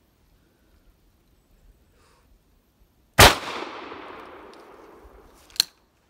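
A single shot from a Rossi Tuffy .410 single-shot shotgun, one loud crack about three seconds in that echoes away over about two seconds. A sharp metallic click follows near the end.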